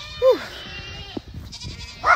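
A farm animal calling out: one short call, rising then falling in pitch, about a quarter second in, followed by a faint high tone and a single click.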